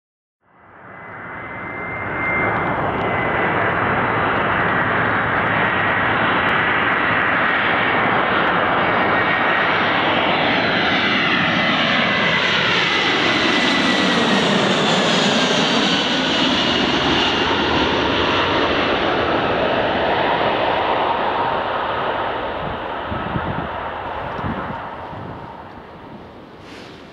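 Jet aircraft passing overhead: a loud engine roar that swells in the first two seconds, peaks midway with a sweeping, phasing whoosh, and dies away near the end, with a high engine whine slowly falling in pitch.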